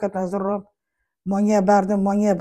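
A woman talking, breaking off for about half a second in the middle before speaking again.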